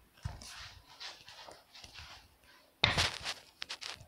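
Handling noise: rustling and soft breathy puffs, then a loud knock or scrape about three seconds in, followed by a few sharp clicks, as the phone is moved and set down low.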